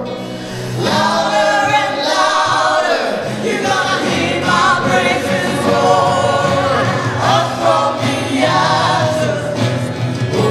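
A church worship band playing and singing a worship song: a male lead voice with acoustic guitar, electric guitar and bass, joined by women's voices and a group of singers.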